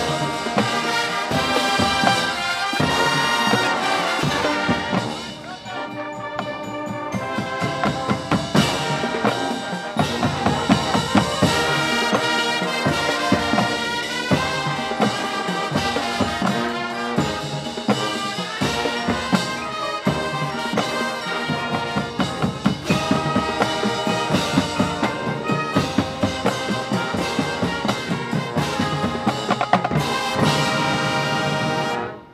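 High school marching band playing its field show: brass (trumpets, trombones, sousaphones) over marching drums and front-ensemble percussion. The volume dips briefly about five seconds in, then builds back up.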